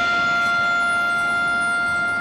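Marching band show music reduced to a single note held steady, one pitch with its overtones and no rhythm.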